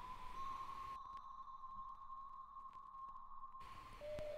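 A faint, steady electronic tone held at a single pitch: a sustained drone in the soundtrack.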